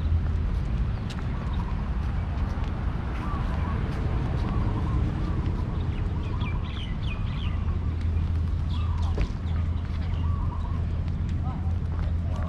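Park ambience: small birds chirping in short scattered calls over a steady low rumble, with faint voices of passers-by.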